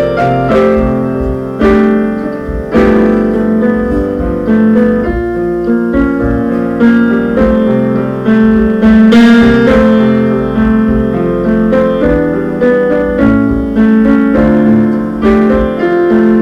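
Piano played in a steady stream of chords and melody notes, with each note striking and then decaying, picked up by a camera's built-in microphone.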